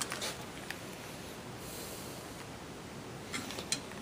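Quiet room noise with a few light clicks and taps from handling a Saiga 12 shotgun's steel receiver and a metal tool: a couple near the start and a short cluster near the end, with a brief faint hiss around the middle.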